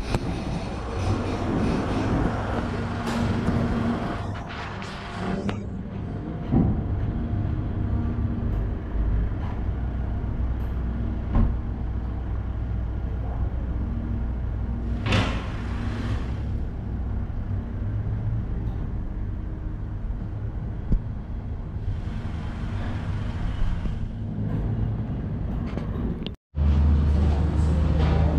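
Mitsubishi Triton pickup's engine running at a low steady drone as the truck is driven slowly onto a drive-on lift, with a few short knocks and a brief hiss near the end.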